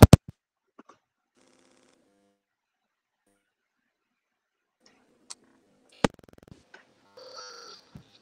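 Audio-jack clicks from earphones being pulled out, with near silence between them: a loud sharp click at the start, a smaller one a little after five seconds, and another sharp click about six seconds in followed by a brief low hum.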